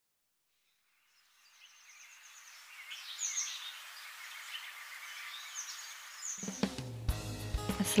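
Birds chirping over a soft hiss, fading in after a moment of silence. Near the end, music with steady low notes comes in.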